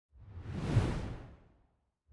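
Whoosh transition sound effect with a low rumble beneath it, swelling to a peak just under a second in and dying away by about a second and a half.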